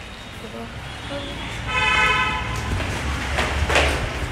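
A vehicle horn sounds one short steady note from the street about two seconds in, with a brief rushing noise near the end.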